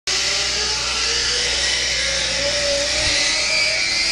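Zipline trolley running along the steel cable, a steady whir with a tone that slowly rises in pitch.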